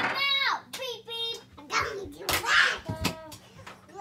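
Young children's voices in play: a few high-pitched, unclear words and breathy sounds, with light knocks about two and three seconds in.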